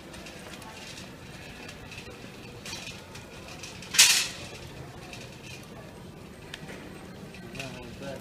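Wire shopping cart rolling over a concrete store floor with a steady rattle in store background noise, one sharp metallic clank about halfway through, and faint voices in the background.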